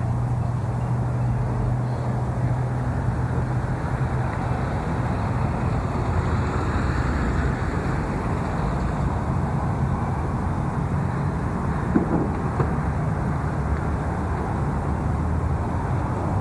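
Car engine running steadily with a low hum, heard close to the microphone over parking-lot background noise, with a brief knock about twelve seconds in.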